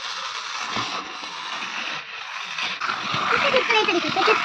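Battery-powered toy train running round a circular plastic track with a steady rattling whir. A child's voice comes in near the end.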